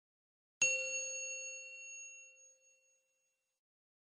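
A single bell-like chime, the logo sound effect, struck about half a second in and ringing out, fading away over about two seconds.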